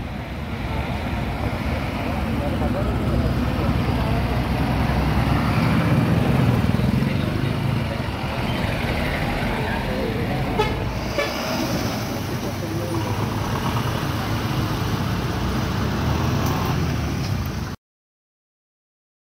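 Street traffic with motor vehicle engines running and passing, and people's voices in the background. The sound cuts off abruptly near the end.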